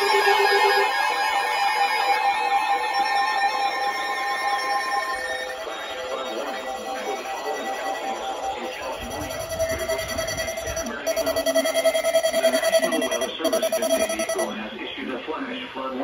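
A bank of NOAA weather radios going off at once for a flash flood warning, their steady and warbling alert beeps overlapping. The mix changes about five seconds in, and a loud pulsing tone stands out for several seconds near the end, with a weather radio's synthesized voice message running beneath the alarms.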